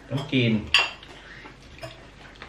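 Cutlery and dishes clinking: two sharp clinks within the first second and a lighter one near the end.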